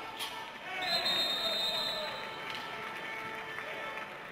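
A sharp knock of stick on ball near the start, then a referee's whistle blown once for just over a second, marking the goal, over voices.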